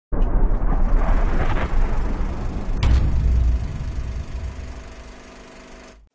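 A loud, deep rumble with a sharp hit a little under three seconds in, after which it fades away with a low steady hum.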